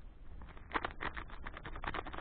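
Plastic food packet crinkling and rustling as it is handled, a dense run of sharp crackles starting a little under a second in.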